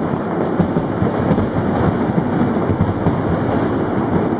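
Fireworks display: a continuous, unbroken rumble of many aerial shell bursts overlapping, with sharp cracks standing out every half second or so.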